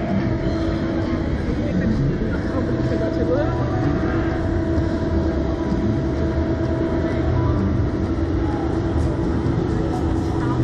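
Steady rumbling noise with a continuous hum heard from the open capsule of a Slingshot catapult ride, running unbroken throughout.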